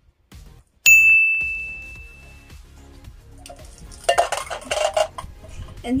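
A sudden metallic ding about a second in that rings out on one high pitch for over a second. It is typical of an empty tin can, wrapped in bamboo sticks as a pencil holder, being dropped and striking the table. A shorter rattling clatter follows about four seconds in.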